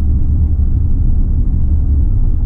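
Steady low rumble of a moving car heard from inside its cabin: road and engine noise.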